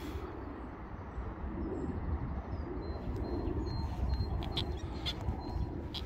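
Outdoor ambience of open parkland: a low rumble of wind and handling on the microphone, with a few faint bird calls.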